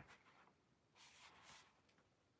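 Near silence with a faint, brief rustle about a second in.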